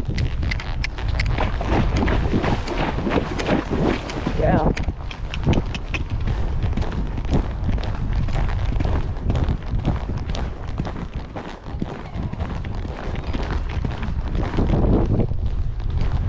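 Horse's hoofbeats at a canter on a sand arena surface, heard through heavy wind buffeting on a chest-mounted camera microphone.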